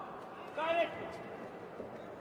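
One short, high-pitched shout from a man's voice about half a second in, over the steady background noise of a sports hall.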